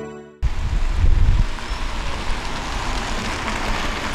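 A car driving up and slowing to a stop, heard as a steady hiss of engine and tyre noise. It starts with a heavy low rumble for about the first second, cutting in sharply as a short chiming jingle ends.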